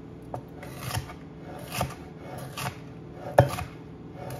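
Chef's knife slicing a red bell pepper into strips on a wooden cutting board: five separate strokes, each a crisp cut that ends with the blade knocking on the board, the loudest about three and a half seconds in.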